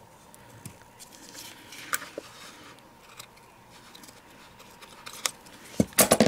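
Small craft scissors snipping through pom-pom trim: a few scattered short snips and clicks, loudest near the end. The blades have hot glue on them and are not cutting cleanly.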